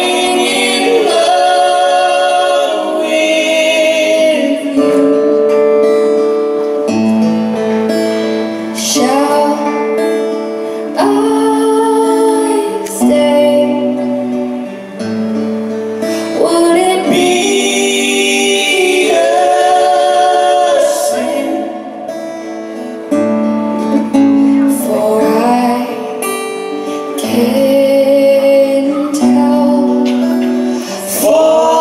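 A slow ballad sung in three-part vocal harmony, a woman's voice with two men's, over two strummed and picked guitars, performed live on stage; the sung lines come in long held phrases.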